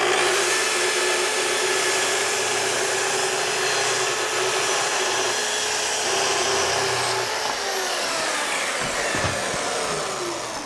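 Festool track saw running through a rip cut in plywood along its guide rail, with a dust extractor drawing through the hose. About seven seconds in the saw is switched off and its motor winds down with falling pitch.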